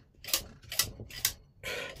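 Metal needles on a Brother punch-card knitting machine's needle bed clicking as they are handled: about five light, separate clicks over a second or so.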